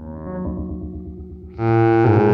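Synton Fenix 2d analog modular synthesizer playing buzzy, overtone-rich tones through its own phaser and delay. About one and a half seconds in, a new, louder and much brighter note comes in suddenly.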